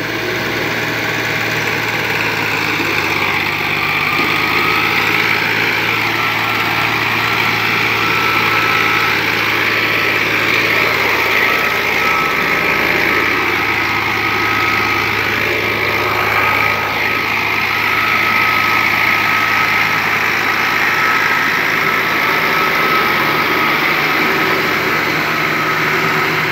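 Diesel tractor engine running steadily under load while it pulls a heavily loaded sand trolley up a sandy cut. A thin steady high whine joins the engine sound a few seconds in and holds.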